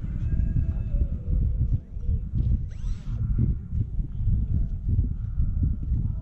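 Radio-controlled model airplanes flying overhead, their motors giving faint whines that drift in pitch, with one rising sweep about halfway through as a plane passes. A heavy uneven low rumble sits under them throughout.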